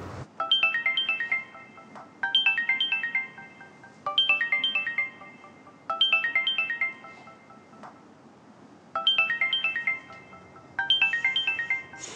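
Mobile phone ringing with a melodic ringtone: a short chiming phrase of stepped notes plays six times, roughly every two seconds, with a longer pause about seven seconds in.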